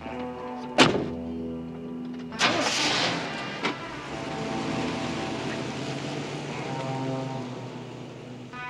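A car door slams shut about a second in, then the engine starts with a short burst and keeps running, under a soft music score of held notes.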